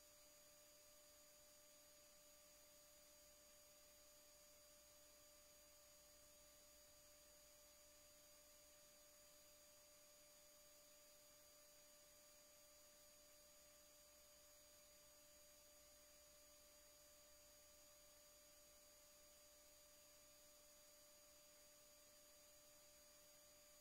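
Near silence: a faint steady hiss with a few thin, unchanging high and mid-pitched tones, like electronic noise in the audio feed.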